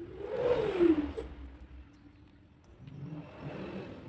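A passing motor vehicle's engine, its pitch rising and then falling within the first second, with a lower steady hum after it.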